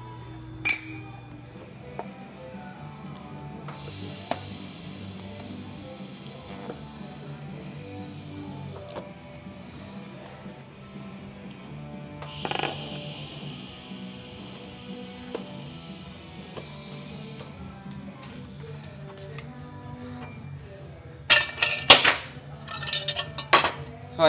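Background music throughout, with two stretches of welding hiss, about five seconds each, as exhaust header pipe pieces are tack-welded. Near the end comes a quick run of metal clinks as the pieces and tools are handled on the metal bench.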